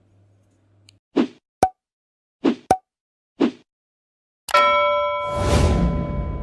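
Logo-animation sound effects: five short percussive hits spread over about two seconds, then, about four and a half seconds in, a sudden bright chime that rings on while a whoosh and a deep rumble swell beneath it.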